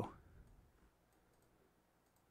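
Near silence: room tone, after the tail of a spoken word fades out in the first half-second.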